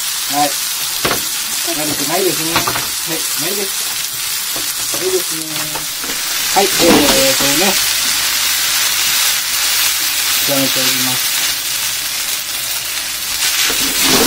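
Yakisoba noodles, shredded cabbage and pork frying in a black frying pan on a gas stove, sizzling steadily while being stirred with chopsticks. The sizzle grows louder about halfway through.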